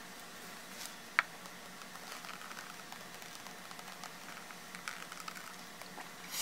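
Coffee being spat onto a paper journal page: faint, scattered pattering of droplets landing on paper, with one sharp click about a second in.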